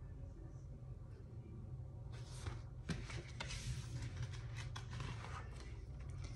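Faint paper rustling and handling of a picture book as it is moved and lowered, with a few light clicks, one a little louder about three seconds in. The first two seconds hold only a low steady room hum.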